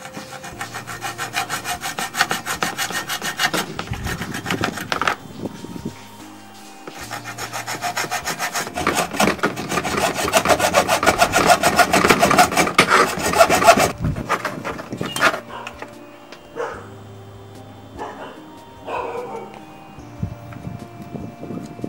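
A hand-held saw blade cutting through a fibreglass circuit board with rapid back-and-forth scraping strokes. It runs for about five seconds, pauses briefly, then cuts again harder and louder for about seven seconds. Lighter, scattered scraping follows near the end.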